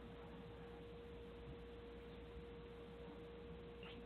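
Near silence on the broadcast line, with a faint steady single tone underneath.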